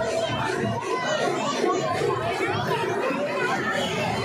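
A large outdoor crowd talking and calling out all at once: a continuous, dense hubbub of many overlapping voices, men's and women's.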